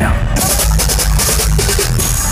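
Loud EDM played by a DJ through a club sound system: heavy, steady bass, with a bright, hissing wash coming in about a third of a second in.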